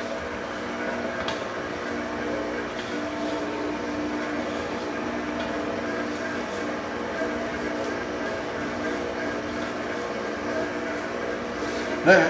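Electric stand mixer running with a steady motor hum, its dough hook kneading a pizza dough that is still a little sticky as flour is worked in and it starts to come together.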